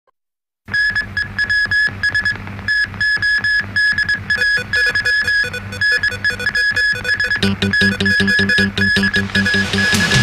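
TV news opening theme: electronic music built on fast, evenly repeated high beeps like a ticking clock. It starts abruptly after a brief silence, and a heavier bass layer joins about seven and a half seconds in.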